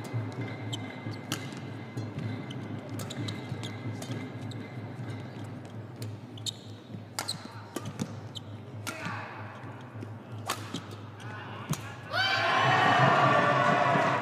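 Badminton rally: sharp racket strikes on the shuttlecock and shoe squeaks on the court, in a large hall. Near the end a loud burst of crowd noise rises as the rally ends.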